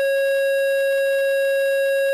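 Electronic school bell: one steady, unchanging tone with a stack of overtones, sounding loudly throughout.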